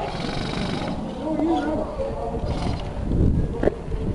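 Distant voices shouting briefly over a steady low rumble on the microphone, with one sharp click near the end.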